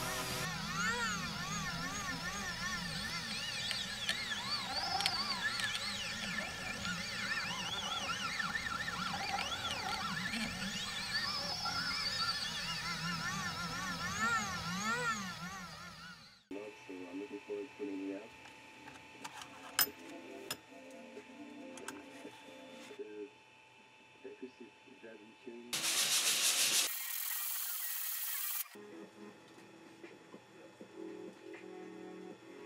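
3018 desktop CNC router carving MDF with an end mill: the spindle runs steadily while the stepper motors whine, their pitch rising and falling again and again as the axes move back and forth. The machine sound stops suddenly about sixteen seconds in, and fainter background music follows.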